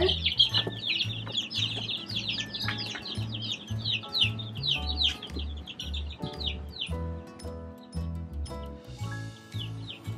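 Young chickens peeping, many quick falling chirps overlapping, thinning out about seven seconds in, over background music with a steady bass beat.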